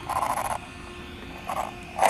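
Two short whirring bursts from the Traxxas RC car's electric motor and metal gearing as the throttle is blipped, the first about half a second long and a shorter one near the end, over a faint steady hum.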